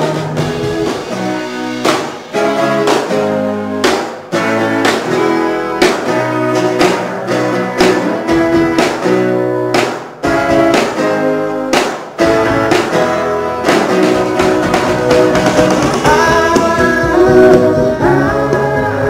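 A live rock band plays an instrumental passage, led by a strummed acoustic guitar with an electric guitar and a drum kit. Strong accents land about every two seconds, and singing comes back in near the end.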